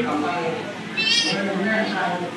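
A brief, high-pitched, wavering cry about a second in, heard over a man's speech.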